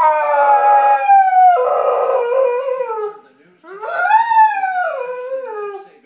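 Golden retriever howling: one long howl that slowly falls in pitch and ends about three seconds in, then after a short gap a second howl that rises and then slowly falls.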